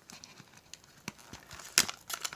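Trading cards being handled and flipped by hand: a few light clicks and taps of card stock, with a louder snap near the end.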